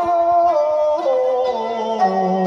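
A woman singing long held notes that step down in pitch, a folk-style vocal line with a plucked lute underneath.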